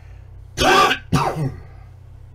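A man coughing twice into his hand: two short, loud coughs about half a second apart, the second slightly lower.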